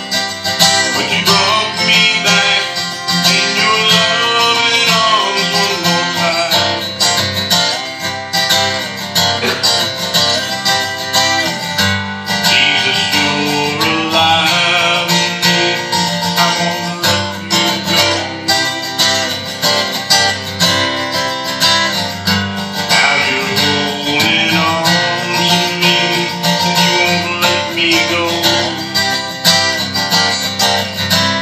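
Acoustic guitar strummed in a steady rhythm, with a man singing a slow song over it in phrases a few seconds long.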